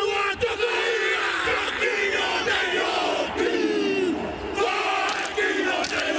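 A group of voices chanting and calling out together, loud and continuous, with many voices overlapping.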